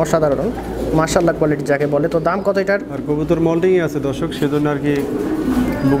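Domestic pigeons cooing: a repeated low call, each phrase held for about a second, going on throughout, with people talking over it.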